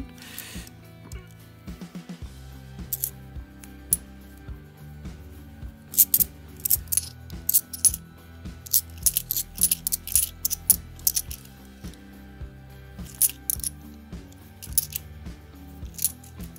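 Bimetallic £2 coins clinking together as they are handled and sorted by hand, in clusters of sharp clicks, over background music with a steady bass line.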